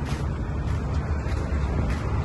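Steady low vehicle rumble with an even background hiss and no distinct events.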